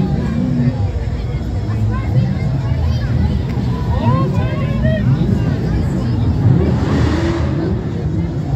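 Lamborghini Huracán's V10 engine running with a low rumble as the car rolls slowly past close by, over steady crowd chatter. About seven seconds in there is a brief surge of louder, brighter noise.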